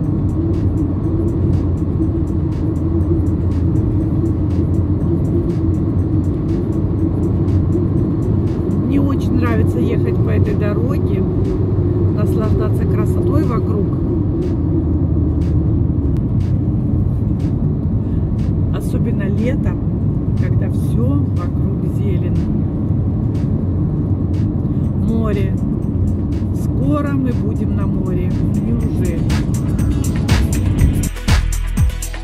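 Steady road and engine noise inside a moving car's cabin at highway speed, with faint, indistinct voices now and then.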